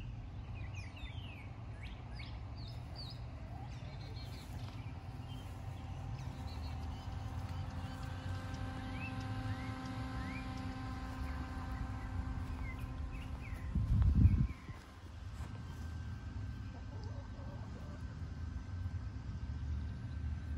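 Outdoor ambience: a steady low rumble of wind on the microphone, with birds chirping in short high calls on and off. A steady hum with several pitches runs through the middle, and a brief louder low rumble comes about fourteen seconds in.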